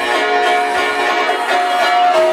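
Electronic dance music in a melodic passage: sustained synth chords with almost no bass, the chord changing about every three-quarters of a second.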